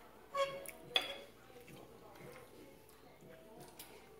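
Cutlery against ceramic plates at a dinner table: a couple of light clinks in the first second, then only faint scrapes and ticks.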